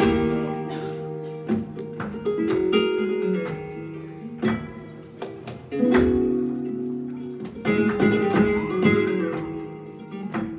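Flamenco guitar playing an interlude in a soleá: runs of plucked notes broken by loud strummed chords at the start, about six seconds in and about eight seconds in.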